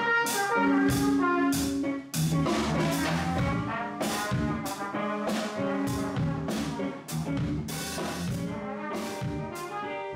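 Small jazz band playing, a trumpet carrying the line over drums that keep time with regular cymbal strokes.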